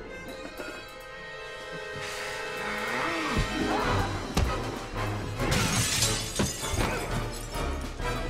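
Dramatic orchestral film score with fight sound effects. A sustained chord comes first, then sharp blows and breaking glass, the loudest crash about two-thirds of the way in.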